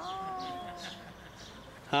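A high-pitched, drawn-out vocal 'aah', about a second long, sliding slightly down in pitch and fading out, followed by a loud spoken 'Hi' at the very end.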